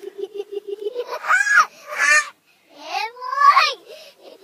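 Girls' laughter and squeals played backwards, sounding garbled. It opens with a quick stuttering run of pulses, then comes a series of sliding, high-pitched squeals, the loudest about three and a half seconds in.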